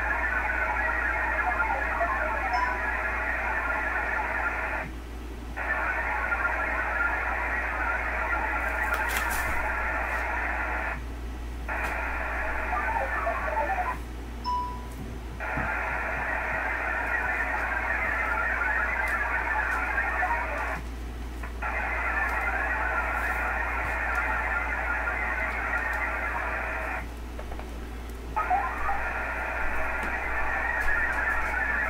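VARA HF modem data signal over an HF radio during a Winlink connection: a dense, hissy band of warbling tones filling the voice passband. It comes in stretches of about four to six seconds, broken by brief gaps, the back-and-forth of the data link. A steady low hum runs underneath.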